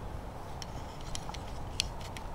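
Low, steady outdoor background rumble with a few faint, sharp clicks, the loudest near the end.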